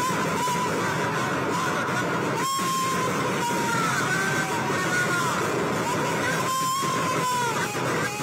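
Dense, loud crowd din from a street crowd, with a high wavering melody line, music or singing through horn loudspeakers, sounding over it again and again.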